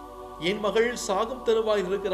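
A man's voice narrating over steady background music of sustained tones; the speech starts about half a second in.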